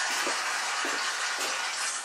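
A steady rushing hiss, with a few faint soft knocks underneath.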